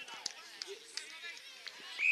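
Distant voices of footballers and onlookers calling across an Australian rules football ground, with a few short sharp knocks.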